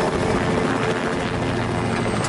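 Helicopter flying close, its rotor blades beating rapidly and steadily.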